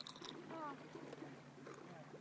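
Quiet: a faint steady low hum from the boat's motor while the boat is steered after the fish, under a short exclaimed "oh" and faint voices.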